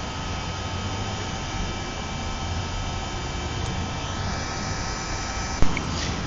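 Electric heat gun running with a steady fan whir and hiss, blowing hot air onto a car's sheet-metal panel to soften the metal and paint before a dent is pushed out, so the paint does not crack. A brief sharp click near the end.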